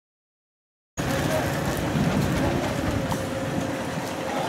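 Steady, noisy background ambience with indistinct voices in it, cutting in abruptly about a second in.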